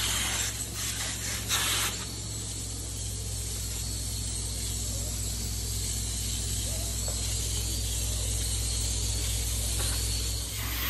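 Upholstery hot-water extraction wand drawn over chair fabric: a steady vacuum rush over a constant low machine hum. There are several short, louder hissing bursts in the first two seconds.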